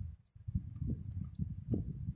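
A few light clicks and soft knocks from a computer being operated while the presentation slide is advanced. They start about half a second in and come irregularly.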